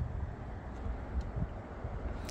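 Low, steady background rumble of outdoor ambience with no distinct event.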